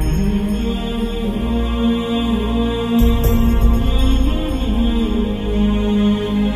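Slow devotional background music: long held, droning notes over a deep bass, with a brief soft hit about halfway through.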